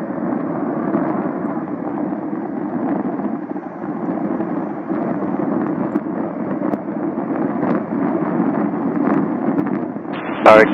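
Twin General Electric F404 turbofans of two CF-18 Hornet fighter jets running at taxi power as the jets line up for takeoff, a steady rumble.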